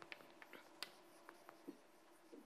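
Chalk writing on a blackboard: a string of faint, short taps and scratches as letters are written.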